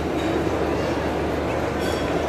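Steady crowd hubbub: many voices blending into one continuous murmur, with no single voice standing out.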